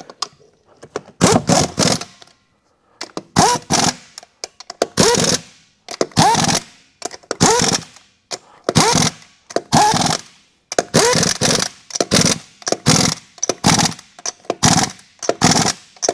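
Air impact wrench running in about a dozen short bursts, each rising in pitch as it spins up, driving lug nuts back onto a truck wheel.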